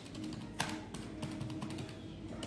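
Scattered light clicks of calculator keys being tapped to add up a column of figures, the sharpest about half a second in, over a faint steady hum.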